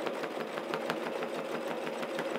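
Bernina 1230 home sewing machine running steadily at speed, its needle stitching rapidly through the quilt layers in free-motion quilting.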